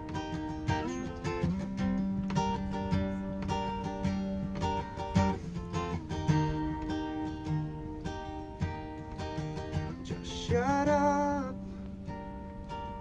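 Two acoustic guitars, one a Gibson, playing an instrumental intro together: picked and strummed chords in a steady rhythm. A short wordless sung note comes in near the end.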